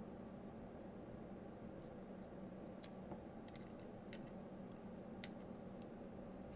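Faint, scattered small clicks, about seven of them in the second half, from a small screwdriver and screws fastening a compute module to its metal fan cooler, over a low steady hum.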